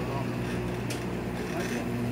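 Steady electrical hum from live-music amplifiers idling between songs, under low crowd chatter, with a faint click about a second in.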